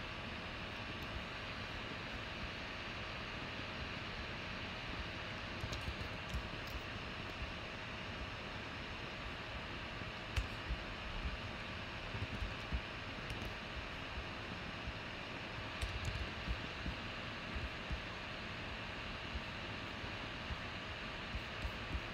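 Steady fan-like room hum with a few faint, scattered clicks from a computer mouse and keyboard as a spreadsheet is being worked.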